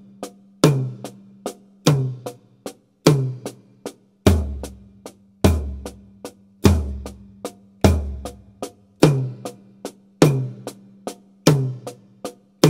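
Drum kit played slowly in triplets with a single-paradiddle sticking. An accented tom stroke falls on every beat, about one every 1.2 s, moving between the floor tom and the small tom, with two soft snare taps between accents.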